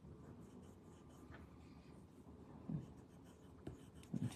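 Faint scratching of a coloured pencil crayon shading on a paper tile. A brief low murmur of voice comes about two-thirds of the way through.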